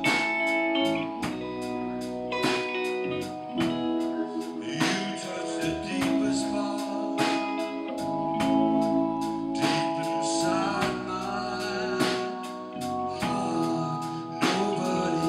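Live blues band playing a slow number: electric guitar with piano and drums, the drums keeping a steady beat of about two hits a second.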